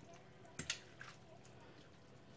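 Faint wet squishing with a few light clicks about half a second in, from two forks tossing milk-soaked spaghetti in a glass baking dish.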